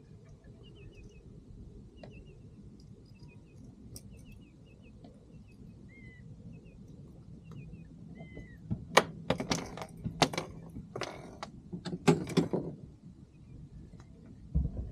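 Faint bird chirps, short repeated calls, over low water and wind noise. From about nine seconds a run of loud splashes and knocks comes for three or four seconds as a striped bass is let go over the boat's side.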